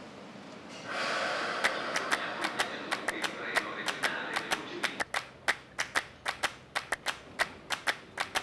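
Footsteps on hard platform paving, a quick, irregular series of sharp clicks, over a steady hiss that grows louder about a second in and drops away about five seconds in.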